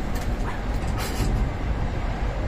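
Steady low rumble heard inside a moving Ferris wheel gondola as the wheel turns, with a brief hiss about a second in.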